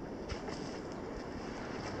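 Steady outdoor wind rushing on the microphone, mixed with the low wash of surf.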